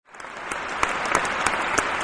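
Audience applause, a dense patter of many hands clapping that fades in over the first half-second after a brief silence and then holds steady.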